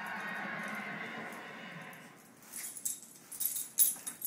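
A scatter of sharp clicks and knocks on a tile floor as a small dog scuffles at a toy doll being pushed along the tiles, with one louder knock near the end. Over the first half, television sound carries on and fades out.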